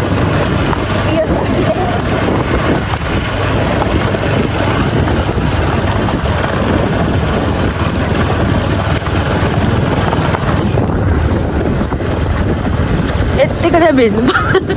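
Steady rumble and wind noise of a moving vehicle, heard from out in the open on board, with voices talking faintly over it at times.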